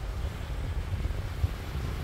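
Wind blowing across the microphone, a steady low rumble.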